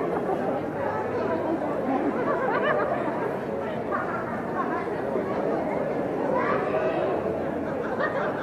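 Crowd chatter: many people talking over one another at a steady level, with no single voice standing out.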